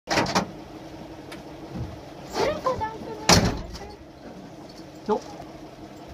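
Vintage Toyota FJ40 Land Cruiser's engine running steadily, heard from inside the cab, with two loud knocks from the body: one right at the start and a louder one about three seconds in.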